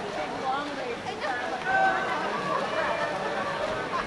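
Background voices of spectators and swimmers at a pool, talking and calling, fainter than the commentator, over a steady wash of noise.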